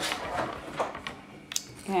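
Hands handling a wooden board game's box and pieces: faint rustling and light knocks, with a sharp click about one and a half seconds in.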